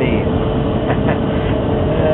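Gas dryer running: a steady low rumble from the drum and blower motor with a constant hum over it, and two short clicks about a second in.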